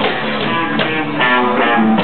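Punk garage rock band playing live, with electric guitar and bass guitar to the fore.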